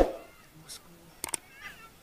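A man's short "oh", then a quick double click about a second and a quarter in: the mouse-click sound effect of an on-screen subscribe-button animation. A faint, short chirping call follows the clicks.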